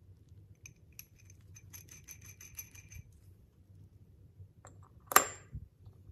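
A steel hex nut spun down the threads of a steel rod: a quick run of light, ringing metallic ticks for a couple of seconds. About five seconds in comes one sharp, loud metal clack that rings briefly.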